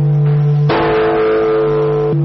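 Large bronze Buddhist temple bell struck with a swinging wooden log, ringing with a low, sustained hum; a fresh strike lands about two-thirds of a second in.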